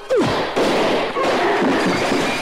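Martial-arts fight sound effects: a sudden yell that drops steeply in pitch, then a dense noisy clamour of impacts with cries in it, lasting about two seconds.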